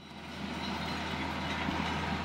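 Farm tractor's diesel engine running as it drives along the road toward the walkers: a steady low drone that swells over the first half second and then holds.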